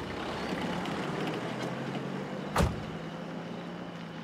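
A car engine idling steadily, with a car door slammed shut once about two and a half seconds in.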